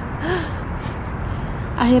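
A woman's short, breathy laugh, over a steady low rumble of outdoor background noise.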